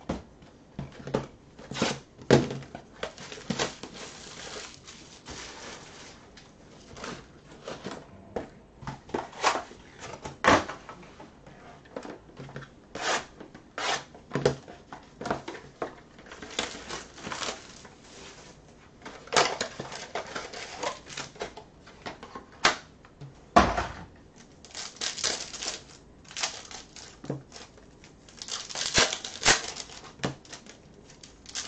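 Foil trading-card pack wrappers being torn open and crinkled, with cards clicking and tapping as they are handled, and several longer crinkling stretches. One heavier thump on the table about two-thirds of the way through.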